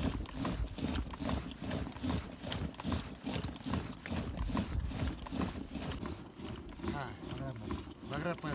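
A man's voice talking low and indistinct, in an irregular run of short, muffled sounds.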